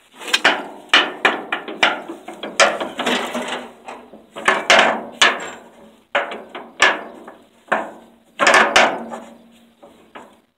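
Ratchet wrench being worked on a stuck, rusty bolt on an old golf cart's steel frame: irregular metal clanks and ratchet clicks, each ringing briefly.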